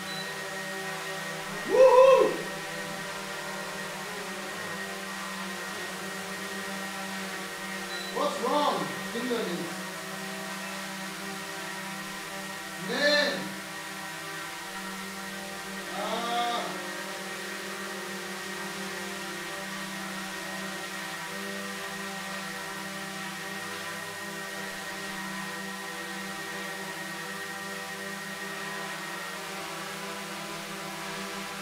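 DJI Mavic 2 Pro quadcopter hovering, its four propellers giving a steady hum of several tones at once. In the first half, four short voice-like sounds rise and fall in pitch over it.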